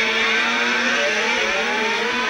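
Electric guitar feedback: a loud held drone with higher pitches wavering and gliding up and down, and no drums.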